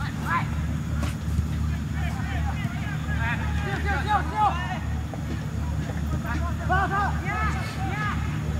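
Football players shouting and calling to each other across the pitch, in two spells around the middle and near the end, over a steady low rumble with a regular pulse. A few faint knocks are scattered through.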